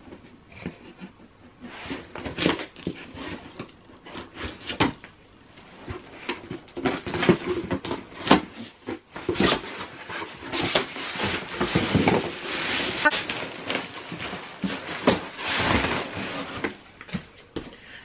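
A cardboard box being opened by hand: scissors slitting the packing tape, then the flaps being pulled open and the plastic-wrapped contents handled. It makes an irregular run of scrapes, rips and crinkles with scattered sharp clicks, busier in the second half.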